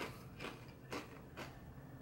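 A person chewing a tortilla chip dipped in guacamole, with faint crunches about twice a second.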